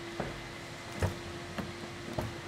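A few soft footsteps on a hard floor, irregularly spaced, over a steady low hum.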